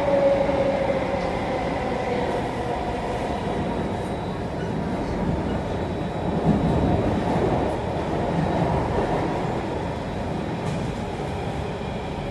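Inside a Circle Line C830 Alstom Metropolis metro train running between stations: a steady rumble of wheels on rail, with a faint motor whine that falls in pitch and fades in the first second or so. A brief louder bump comes just past halfway.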